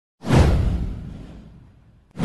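Whoosh sound effect with a deep low boom under it, hitting suddenly about a quarter second in and fading away over about a second and a half.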